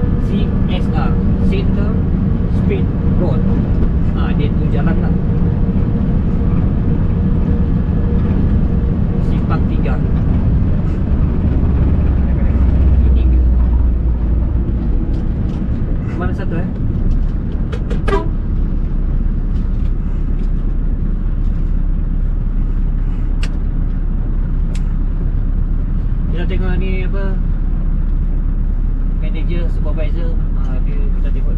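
Diesel engine of a Scania heavy truck, heard from inside the cab while driving, a steady loud drone. About halfway through it grows deeper and louder for a couple of seconds, then eases off.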